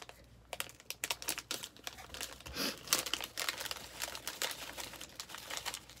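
Candy wrapper crinkling and rustling in the hands in a run of irregular crackles as a packet of chewy strawberry bonbons is worked open and the candies shaken toward the opening.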